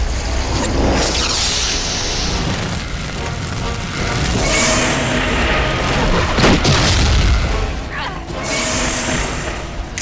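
Cartoon battle sound effects: heavy booms and sweeping whooshes over dramatic score music, with one sharp impact about six and a half seconds in.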